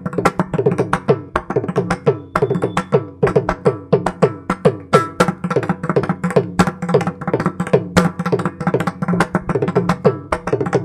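Mridangam played solo in fast, dense strokes, some of them bending in pitch, over a steady low drone.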